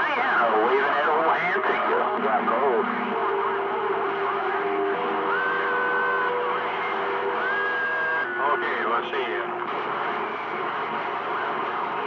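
CB radio receiver on channel 28 picking up a crowded skip channel: garbled, overlapping distant voices under a constant hiss of static, with steady whistling tones coming through in the middle.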